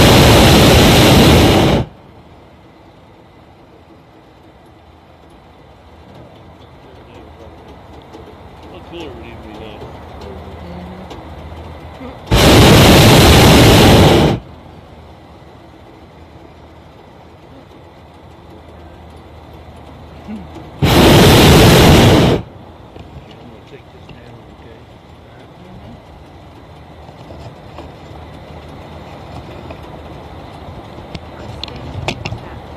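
Hot air balloon's propane burner firing in three loud blasts of about two seconds each: the first cuts off about two seconds in, the second comes a little before the middle, the third about three-quarters through, with quiet between them.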